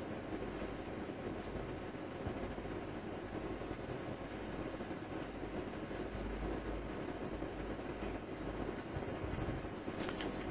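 Faint steady hiss and low hum of room tone, with no distinct events.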